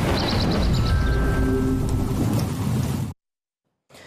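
TV news transition sting: a loud swell of dense noise with a deep rumble, a quick run of high ticks near the start and a few held tones in the middle. It cuts off abruptly about three seconds in.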